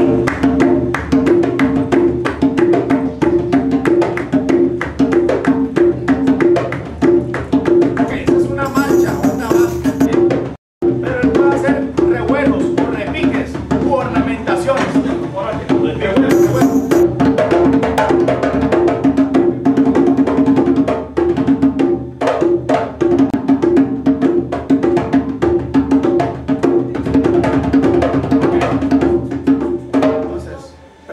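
Tambor alegre, a hand-played cumbia drum, keeping a plain steady base rhythm (a 'marcha', without improvised flourishes) amid other percussion, with a dense run of hand strikes on the drumheads. The sound cuts out for a moment about ten seconds in, then the same pattern carries on.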